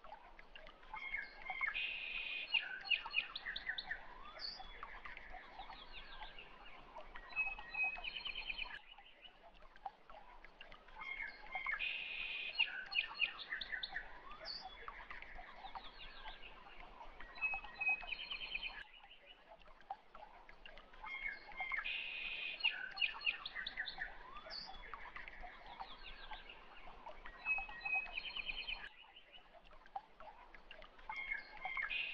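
Recorded birdsong with chirps, short trills and whistles over a faint hiss. The same stretch of about ten seconds is looped, repeating three times.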